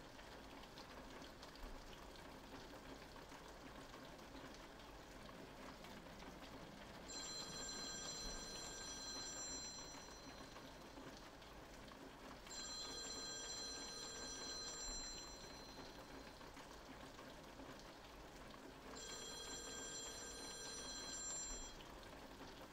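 A phone ringing three times, each ring a steady electronic tone about two and a half seconds long, with gaps of a few seconds between them. Under the rings runs a faint steady hiss of rain.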